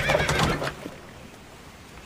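The end of a carriage horse's whinny, dying away within the first second.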